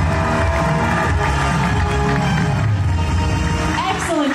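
Loud show music with a heavy bass plays over an audience clapping fast and cheering, and both stop abruptly at the end.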